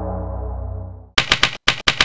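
Ambient synth music fading out, then about a second in a typewriter sound effect starts: rapid, sharp key strikes, several a second.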